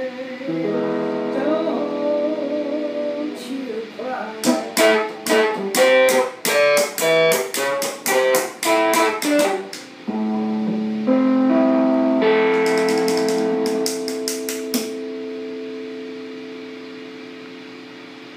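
Stratocaster-style electric guitar played with the fingers: held notes and chords, then from about four seconds in a run of sharp, percussive strikes on the strings about two a second. It moves on to held chords with more strikes, and the last chord rings out and fades over the final few seconds.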